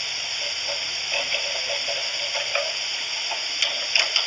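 Steady hiss from the recording, with faint, indistinct voices underneath and a light click near the end.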